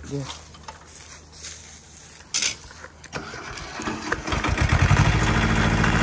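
Ford 1100 compact tractor's diesel engine coming up to speed about four seconds in, then running loudly and steadily. A single sharp knock comes a little before it.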